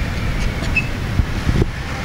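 Low, steady outdoor rumble of street traffic, with a couple of dull thumps about midway.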